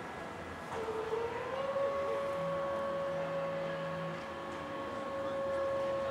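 Whine of the machinery that drives the Concorde's droop nose. It starts about a second in, rises a little in pitch as it spins up, then holds one steady tone.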